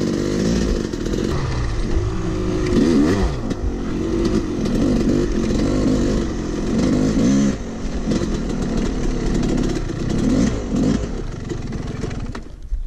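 Yamaha two-stroke dirt bike engine being ridden, revving up and down over and over with the throttle, heard from on the bike with a steady low rush of wind.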